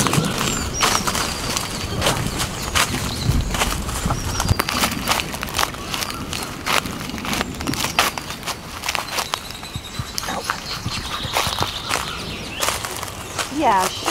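Footsteps in sandals crunching on dry leaf litter, with plants brushing and crackling as they push through jungle undergrowth; irregular sharp crackles throughout.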